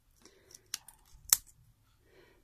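A few small clicks and taps from handling little craft items on a table, the sharpest single click about a second and a half in.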